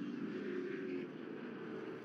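Racing muscle-car engines running at speed past a trackside microphone, a steady engine note that eases off a little after about a second.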